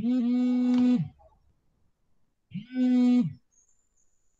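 A voice holding one steady note, twice, each time for about a second, the second starting about two and a half seconds in.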